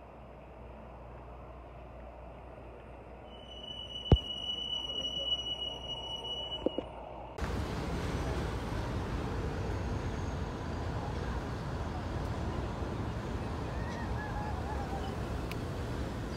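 City street traffic noise. A muffled stretch near the start carries a high, steady squeal lasting about three seconds and a single sharp click; after that the noise turns suddenly louder and steady.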